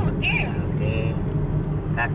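Steady low engine and road rumble heard from inside a moving car's cabin, with short snatches of a voice about a quarter second and a second in.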